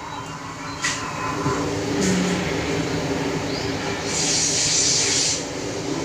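Water jets of a dancing fountain rushing steadily, with a louder, brighter hiss of spray from about four to five and a half seconds in.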